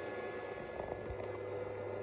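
Steady fan hum and hiss with a few faint steady tones.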